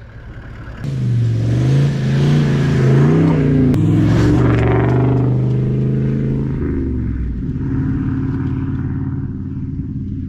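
Toyota LandCruiser Troop Carrier driving off along a sand track. A knock comes about a second in, then the engine revs up with its pitch rising and stepping through the gears. After about seven seconds it drops to a quieter, steady hum as it moves away.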